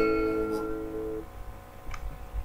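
Last strummed chord of an acoustic guitar ringing and fading away, most of its notes dying out just over a second in. A faint click near the end.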